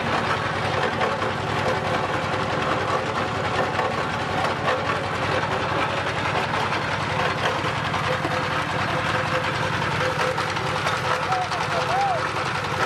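Diesel engine running steadily with a fast, even knocking beat, driving a mustard oil expeller as it presses mustard seed.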